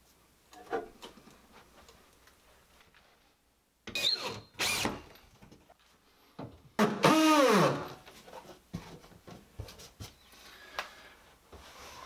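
Cordless drill driving screws through a wooden support strip into the wall in short bursts. The longest burst comes about seven seconds in, with the motor's pitch falling as it runs, followed by light clicks and knocks of handling.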